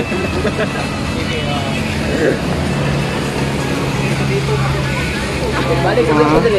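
A motor running steadily with a low, even hum, under faint background talk.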